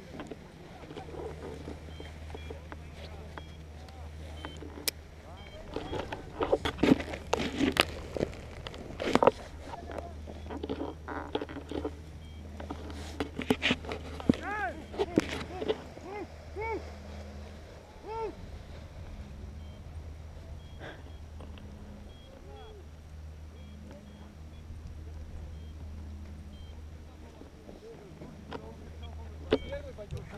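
Muffled, untranscribed voices and knocks and rustles from a hand-held camera pole being handled, over a steady low rumble. The knocks cluster in two spells, one in the first third and one around the middle.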